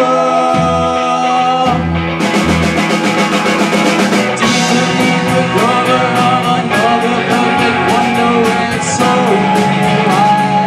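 Live rock band playing: a male lead vocal sung over electric guitars and drums. The drums play low kick hits early on, then about two seconds in switch to a fast, steady beat of cymbal strokes.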